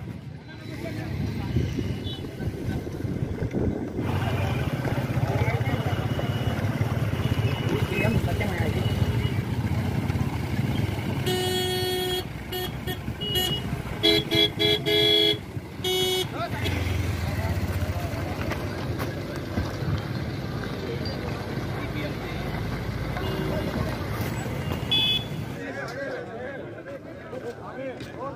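A slow line of cars driving past with engines running, and car horns honking: one short honk about eleven seconds in, then a run of several honks around fourteen to sixteen seconds.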